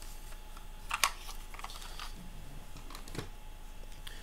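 Plastic cassette cases being handled: a few light clicks and taps, the sharpest about a second in.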